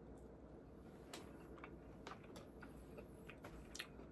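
Faint mouth sounds of someone chewing a breaded spicy chicken fry, with a few soft clicks scattered through.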